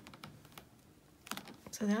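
A few light, scattered taps and clicks from rubber stamp and ink pad being handled on a craft table as a cloud stamp is inked and pressed. A woman's voice starts near the end.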